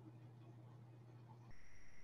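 Near silence: room tone with a steady low hum, and a faint hiss that rises slightly near the end.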